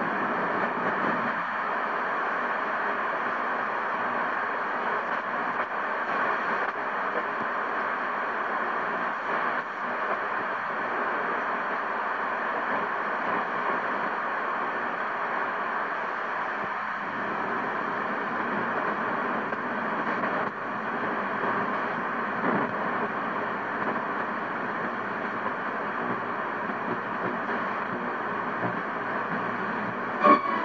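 Steady static and hiss from a Hammarlund HQ-100A tube communications receiver tuned to a spot with no station coming through.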